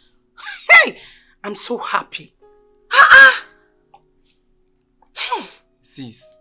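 Speech only: a man and a woman talking in short, animated phrases with gaps between them.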